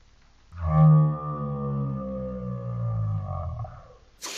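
A long, distorted, pitched sound gliding slowly downward. It starts suddenly and loudest about half a second in, and fades near the end. It sounds like an edited-in comedic sound effect.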